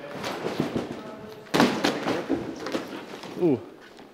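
Scattered thuds and knocks from a person jumping and climbing on padded obstacles, with voices mixed in; one loud impact about a second and a half in, and an 'ooh' near the end.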